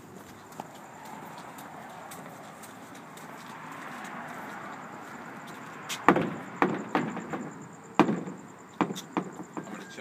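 A steady rustling hiss, then from about six seconds in a run of sharp, uneven footsteps on hard pavement, about one or two a second.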